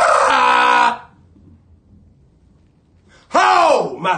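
A man roaring with his full voice: one loud held cry of about a second, then after a short quiet a second cry that falls in pitch near the end.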